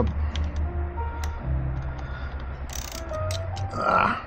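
A socket ratchet clicking in short irregular runs as the clutch actuator's mounting bolts are tightened, with background music underneath.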